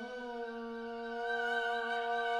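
Haegeum, a Korean two-string bowed fiddle, holding one long bowed note that slides up slightly at the start and then stays steady.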